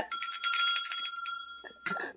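A high-pitched bell rung in a fast trill for about a second, its ring fading out over the next second.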